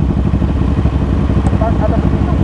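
Parallel-twin Kawasaki motorcycle engines idling at a standstill in traffic: a steady low rumble.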